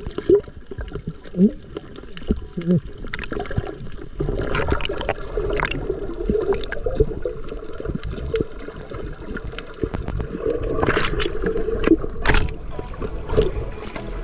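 Muffled underwater sound of snorkelling, heard through a submerged camera: water gurgling and bubbling with many small clicks. Louder bursts of bubbles and splashing come near the end as a swimmer moves at the surface.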